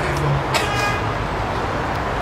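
Steady road traffic noise, with a short car horn toot about half a second in.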